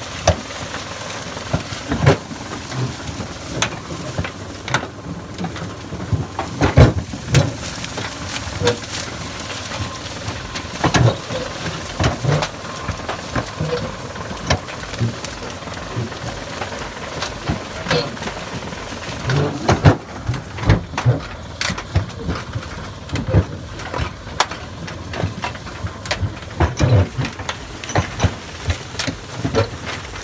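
Kubota Sunshine compact tractor running steadily as it drives through a dry cornfield, with frequent irregular knocks and clatters over the engine noise.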